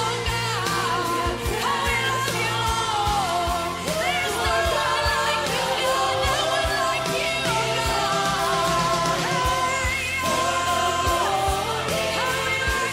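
Contemporary Christian worship song: a solo voice sings a gliding melody over a full band with sustained chords, bass and a steady drum beat.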